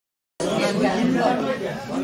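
Dead silence, then about half a second in an edit cut brings in several people talking over one another at once.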